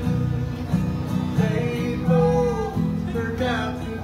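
Two acoustic guitars strummed together in an old-time country song, joined by a man and a woman singing in harmony from about a second and a half in.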